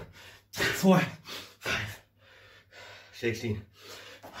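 A man breathing hard and gasping out loud from the effort of six-count burpees: three loud voiced gasps roughly a second apart, with a quieter stretch of breathy panting between the second and third.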